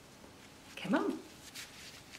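A dog gives one short whine-like vocal sound about a second in, rising and then falling in pitch, with faint light clicks of the toy being handled after it.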